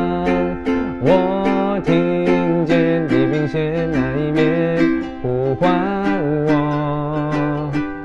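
A man singing lyrics in Mandarin over a strummed ukulele. He holds long notes while the ukulele keeps an even strumming rhythm.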